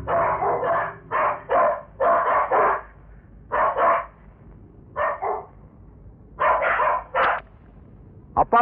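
A dog barking in about six short runs of two or three barks each, with brief pauses between the runs.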